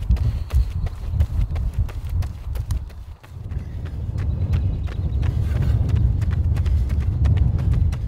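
Running shoes striking asphalt in quick, regular footfalls over a steady low rumble, dropping away briefly about three seconds in.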